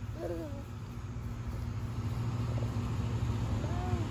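A toddler's short vocal sounds, a brief falling 'ooh' just after the start and another near the end, over a steady low outdoor rumble.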